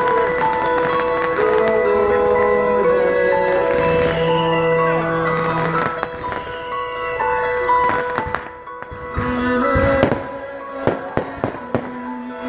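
Music playing with fireworks going off over it. The music is full for the first part. In the second half it thins under a run of sharp pops and cracks, the loudest about ten seconds in.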